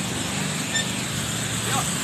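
Street traffic noise: a steady wash of cars on a busy road, with a low engine hum underneath.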